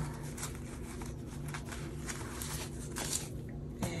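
Paper banknotes being handled and sorted by hand: a string of soft, crisp rustles and flicks of paper, over a low steady hum.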